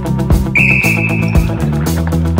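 A referee's whistle blown once, a steady tone lasting about a second, starting about half a second in, over background music with a steady beat.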